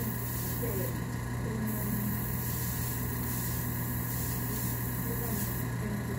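Sandpaper being rubbed by hand over the putty-filled hair part of a small Nendoroid figure head. The sanding is faint under a steady low hum.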